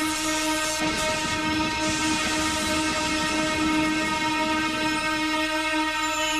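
Soundtrack of several steady held tones sounding together. About a second in, a rushing, rumbling noise joins them.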